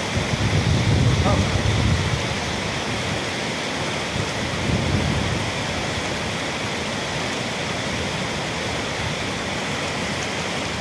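Whitewater rapid of a river rushing steadily, a dense hiss of churning water, with heavier low rumble in the first two seconds and again around five seconds in.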